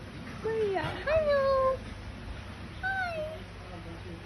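A dog recovering from spay surgery whining in three drawn-out cries with a wavering, falling pitch; the second cry is the longest and loudest.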